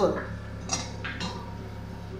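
A spatula scraping and stirring cumin seeds as they dry-roast in an iron kadai, with short scrapes about two-thirds of a second and a second in, over a low steady hum.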